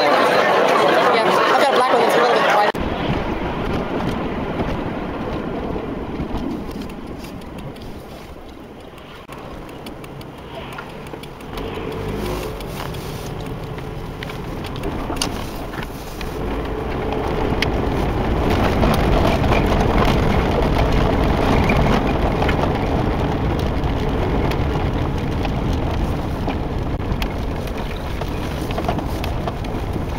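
Several people talking at once for the first few seconds, then an abrupt change to a steady low rumble with faint voices under it, quieter for a few seconds before building again.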